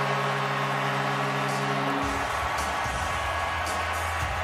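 Arena goal horn sounding one steady chord over a cheering crowd after a home goal, cutting off about two seconds in. Low, bass-heavy music and crowd noise carry on after it.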